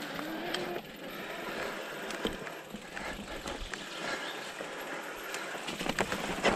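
Specialized Turbo Levo electric mountain bike riding down a dirt forest trail: a steady rush of tyres on dirt, with scattered clicks and rattles from the bike over bumps that grow busier near the end.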